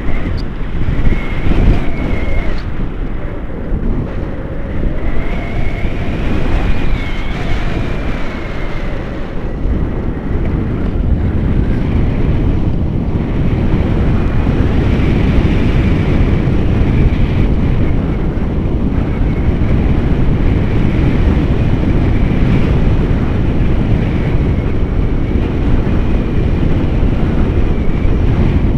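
Airflow buffeting a camera microphone in paraglider flight: a loud, steady rush of wind noise, heaviest in the low end, with a faint wavering whistle above it.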